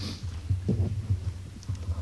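A low, uneven throbbing hum with a few soft low thumps, with no speech.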